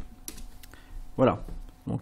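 A couple of sharp computer keyboard clicks, then a short vocal sound from a man about a second in, with his speech starting near the end.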